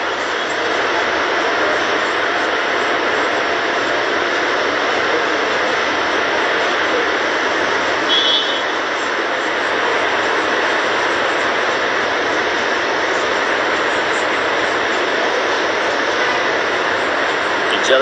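Steady, loud rushing noise with no pitch or rhythm, and a brief high chirp about eight seconds in.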